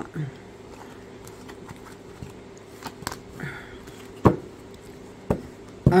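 Tarot cards handled and set down on a cloth-covered table: a few soft ticks, then two sharper knocks about four and five seconds in, over a steady low hum.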